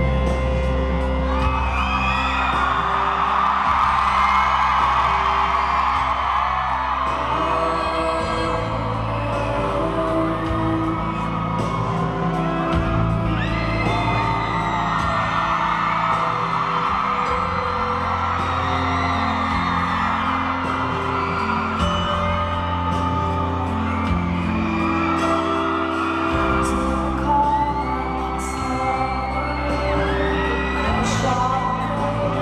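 Live pop ballad heard from the audience in a large hall: a woman sings at the microphone over acoustic guitar and sustained low bass notes, with whoops from the crowd.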